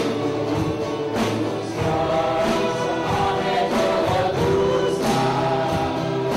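Live worship band performing a praise song: male and female voices singing together in harmony over guitars and keyboard, with a strong beat about every second and a quarter.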